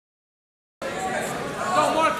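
Silence at first, then people talking and chattering from a little under a second in, in a large gym.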